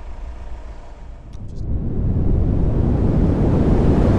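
A low outdoor rumble of wind on the microphone, then about halfway through a rushing whoosh that swells up and holds steady: the sound effect that opens an animated logo ident.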